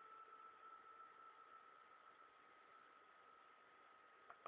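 Near silence: a faint steady hiss with a thin, high, steady tone that slowly fades.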